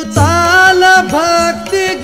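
A Marathi devotional abhang: a singer's voice holding and bending long notes over instrumental accompaniment, with a low drum stroke early on.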